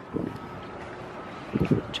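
Outdoor ambience: a steady low hiss of wind on the microphone with faint voices in the background, then a man's voice starts near the end.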